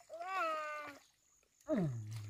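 A short, high, meow-like whine from an infant, rising then falling in pitch. Near the end a voice slides steeply down in pitch.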